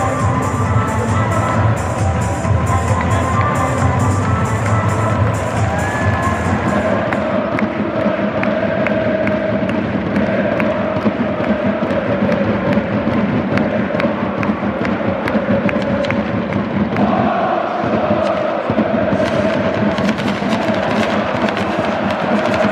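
Stadium PA music with a heavy bass beat for the first several seconds, then a large football crowd singing a sustained chant over a steady crowd roar.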